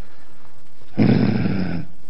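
A man clearing his throat: one rough, gravelly sound just under a second long, about a second in.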